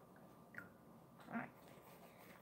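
Near silence: room tone, broken about a second and a half in by one short, nasal vocal sound from a girl.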